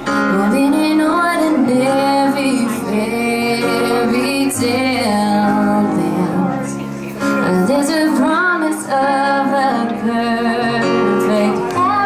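A woman singing a slow pop song live into a microphone over instrumental accompaniment, her voice gliding between long held notes.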